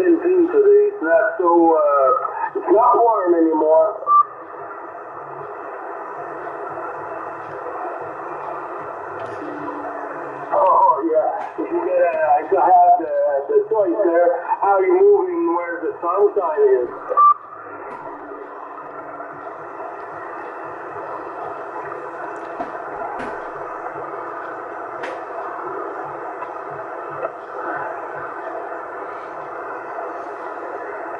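Yaesu FT-450 transceiver receiving 27 MHz CB on upper sideband: two short overs of a distant station's voice, each ending in a brief beep, with steady band static hissing in between.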